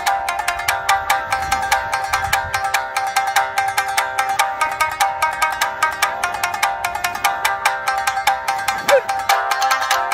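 Three shamisen played together, their strings struck with plectrums in a fast, even run of sharp plucked notes. About nine seconds in, one note slides in pitch.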